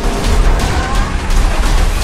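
Action-movie trailer soundtrack: loud music with a heavy low pulse, mixed with a car engine sound effect and several sharp hits.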